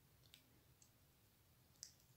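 Near silence with three faint small clicks, the last near the end the clearest: plastic parts of a miniature 1/6 scale M60 machine gun being handled in the fingers.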